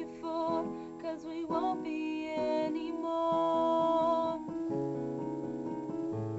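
Solo female voice singing the closing notes of a slow ballad, ending on a long held note, over a softly played instrumental accompaniment that carries on alone for the last second or so.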